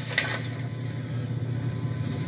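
A pause between speech: steady low background hum with a faint hiss, and a small click just after the start.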